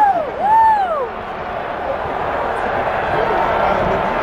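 Soccer crowd: two long, loud rising-and-falling shouts in the first second, then a steady din of crowd noise from the stadium.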